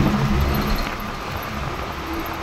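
Steady rumble of engine and road noise from a moving road vehicle, heard from on board.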